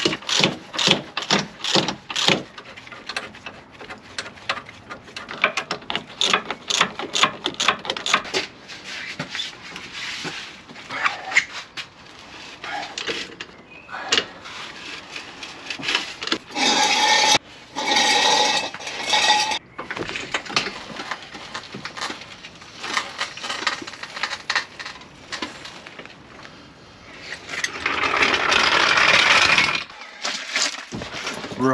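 Hand tools working metal on a car's rear wheel hub and brake as it is reassembled: rapid clicking and scraping strokes, then a wheel brace turning the wheel nuts. There is a louder steady stretch about midway and another near the end.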